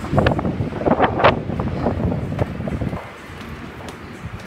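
Wind buffeting the phone's microphone: a loud, rough rumble for about three seconds that then eases off.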